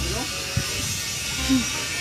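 Indistinct voices over a steady hiss of room noise, with a short sharp knock about half a second in.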